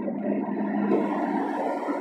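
Steady low hum of an idling vehicle engine, with faint wavering sounds over it.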